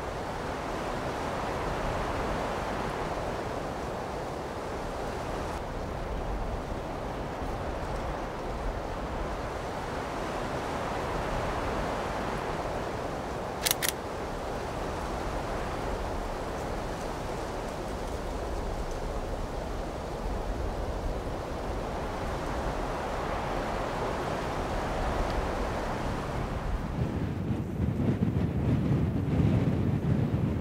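Wind blowing steadily, swelling and easing in slow gusts, with a single short click about fourteen seconds in and low buffeting on the microphone near the end.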